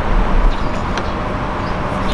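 Steady outdoor background noise with a low rumble, a stronger surge in the first half second, and a few faint high ticks.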